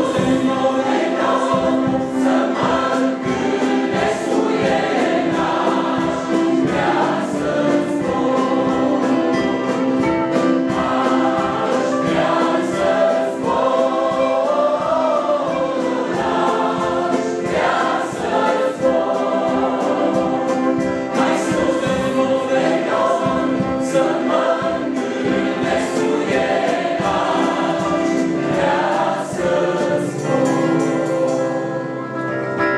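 A church congregation singing a Romanian hymn together, led by singers on microphones, over a digital piano accompaniment with a steady beat.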